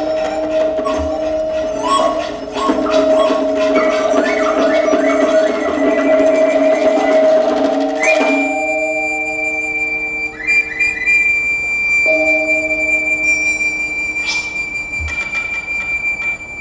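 Chinese traditional orchestra music: a yangqin (hammered dulcimer) plays quick struck notes over held chords. About halfway through, the texture thins to long sustained notes with a high flute tone held above them, and a single struck accent comes near the end.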